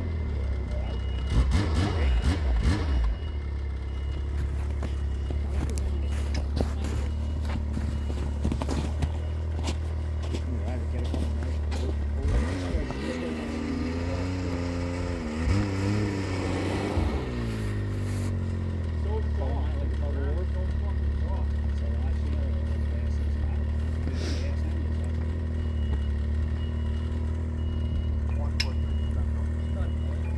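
Snowmobile engine running at idle, revved up and down several times about halfway through, then settling back to a steady idle.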